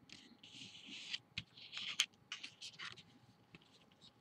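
A paper bill being folded and creased by hand: rustling and scraping of paper against fingers and the table, in a couple of longer strokes in the first two seconds, then shorter scratches and a few sharp crackles.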